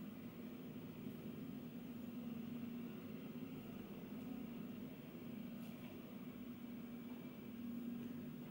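Quiet room tone: a steady low hum under a faint even hiss, with one faint brief rustle about three quarters of the way through.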